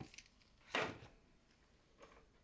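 Faint plastic handling sounds from a gloved hand pressing the battery cover onto an old multimeter's case: a small click at the start and a short scrape a little under a second in.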